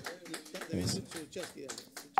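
Faint, indistinct voices talking.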